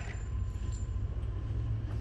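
Steady low hum and rumble of an indoor room's background noise, with a few faint clicks and no gunshots.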